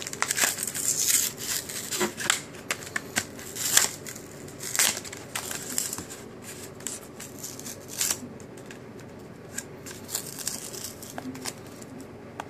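Plastic blister packaging of a Pokémon card promo pack being crinkled, bent and torn open by hand, in a run of sharp crackles and snaps that thin out after about eight seconds.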